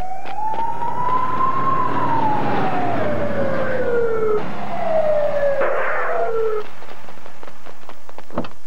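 Ambulance siren wailing: one slow rise and a long fall in pitch, then a second falling sweep that cuts off near the end.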